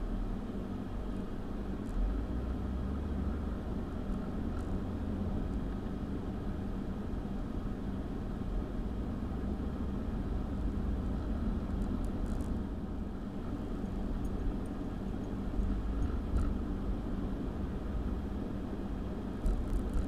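Steady cabin noise of a moving car: engine and tyre rumble with the air-conditioning blower running, picked up by a windshield-mounted dash cam's built-in microphone. A few faint ticks come through now and then.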